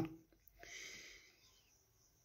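Near silence: room tone, with one faint short noise about half a second in.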